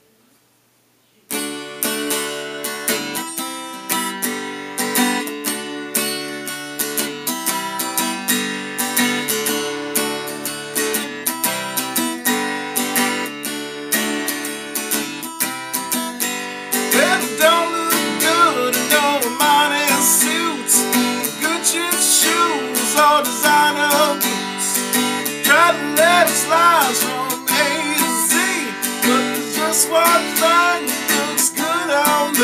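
Acoustic guitar strummed in a steady rhythm, starting abruptly about a second in after near silence: the opening of a song. From about halfway a wavering melody line sits over the chords and the playing gets a little louder.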